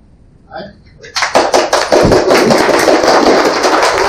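Audience applauding, starting about a second in.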